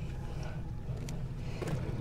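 A steady low hum aboard the boat, with a few faint clicks as a fish spike is pushed into an almaco jack's head.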